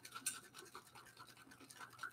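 Aerosol can of whipped cream being shaken by hand: a faint, quick rhythmic rattle and slosh.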